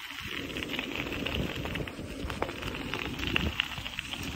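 Bicycle rolling over a rough road surface: a steady rush of tyre and wind noise on the microphone, with scattered small clicks and rattles from the bike.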